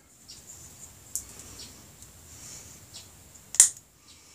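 A switchblade knife being handled, with a few faint clicks, then one sharp click about three and a half seconds in as the blade snaps open.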